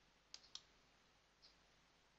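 Faint computer mouse clicks: two sharp clicks about a fifth of a second apart a third of a second in, as a web page button is clicked, then a fainter tick near the middle of the clip.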